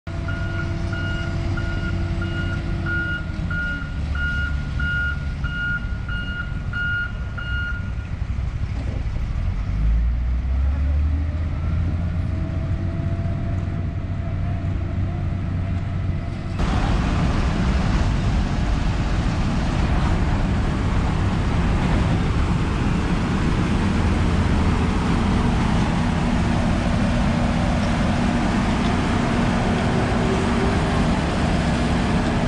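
Diesel road-construction machinery (asphalt road rollers and a paver) running steadily, with a reversing alarm beeping in a regular on-off pattern for roughly the first eight seconds. About halfway through, the sound turns suddenly louder and fuller as a heavier machine takes over.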